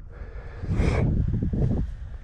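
Low rumble of wind buffeting the helmet camera's microphone, with a single quick breath or sniff about a second in.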